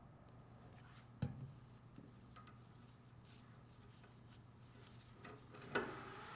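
Near-quiet workshop room tone with a faint steady low hum, broken by a sharp click about a second in and a smaller one just before the end, as gloved hands handle small threaded steel pipe fittings.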